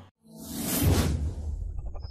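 Whoosh sound effect of an animated outro: it swells up out of a brief silence, peaks about a second in and fades, with a low rumble carrying on beneath it.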